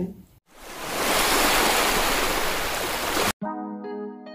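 A loud, even rushing noise like surf swells in over about half a second, holds for about three seconds, then cuts off suddenly. Sustained music chords begin right after.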